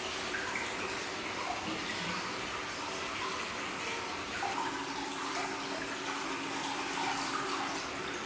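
Hot-spring water pouring steadily into a bath, a continuous rush and splash of flowing water.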